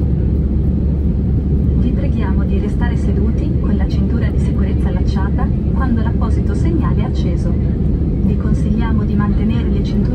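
Airbus A319 cabin noise during the climb: a loud, steady low drone of the jet engines and rushing air heard from inside the cabin, with a voice talking over it.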